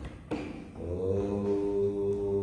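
A man's voice begins a meditative chant about a second in, holding one long, steady note without a break.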